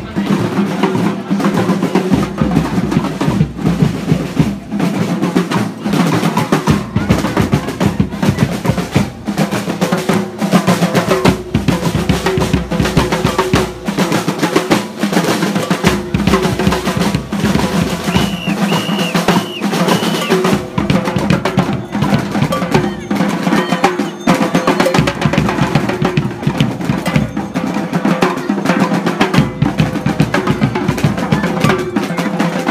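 Street drums playing a fast, steady beat with dense, evenly repeated strokes, and a few brief high tones about two-thirds of the way in.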